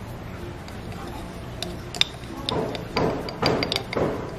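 Metal spoon against glassware while spooning out instant coffee granules: a few sharp clinks on glass, then from about halfway scratchy scraping of the spoon through the granules with more clinks.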